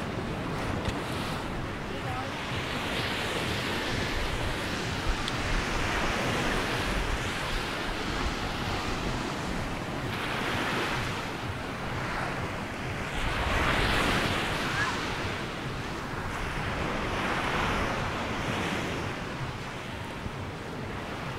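Small Mediterranean waves breaking and washing up on a sandy, pebbly shore, swelling and fading about every three to four seconds, the loudest near the middle. Wind rumbles on the microphone underneath.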